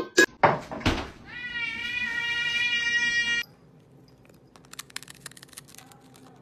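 A cat's single long meow of about two seconds, rising briefly and then held at a steady pitch. It comes after a few sharp knocks in the first second, and faint clicking follows near the end.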